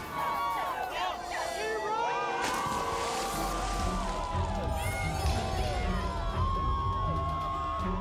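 A crowd cheering and shouting at once over edited background music; a steady low beat in the music comes in about three seconds in.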